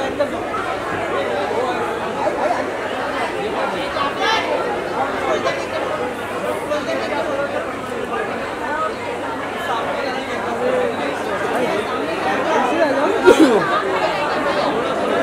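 Crowd chatter: many voices talking over one another at once, with no single speaker standing out, and a louder voice breaking through near the end.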